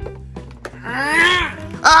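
A person's long, high-pitched cry that rises and then falls, followed near the end by a short shout of "Ah!", over steady background music.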